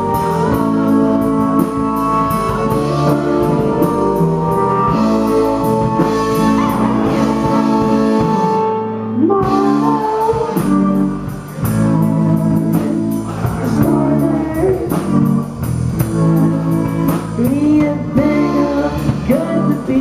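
Live rock band playing: electric guitar and drum kit with a sung vocal. The drums and low end cut out briefly about nine seconds in, then the band comes back in.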